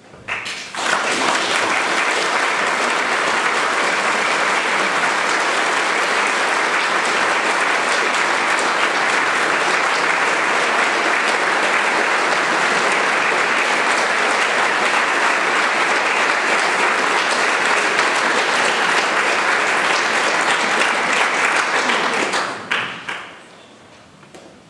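Concert audience applauding, starting abruptly just after the start, holding steady, then dying away about a second and a half before the end.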